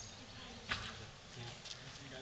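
Faint buzzing of a flying insect, with a short, sharp sound about two-thirds of a second in and a weaker one near the end.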